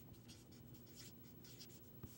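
Faint scratchy strokes of a felt-tip marker writing a word on a board, several short strokes a second.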